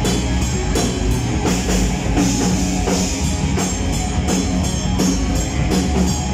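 Live rock band playing: electric guitars and bass guitar over a drum kit keeping a steady beat of about three strikes a second.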